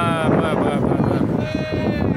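Two long, high-pitched shouted calls from people on the pitch, one at the start and a shorter one near the end, over loud outdoor noise.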